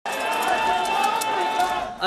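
Crowd of mourners in a street procession: voices hold a long drawn-out chant over the crowd noise, with a few faint sharp clicks.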